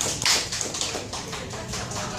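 Scattered hand-clapping from a small audience, the claps thinning out and dying away about a second in.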